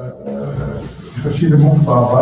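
Speech only: a man talking in a small room.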